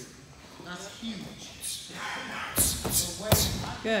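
Bare feet thudding and stomping on padded training mats during a fast round kick, back knuckle and punch combination. Quick hissing swishes come in a burst about halfway through, then several thuds, the loudest a little after three seconds in.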